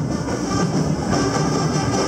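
Loud live parade band music with brass, heard as a dense, steady wash of sound.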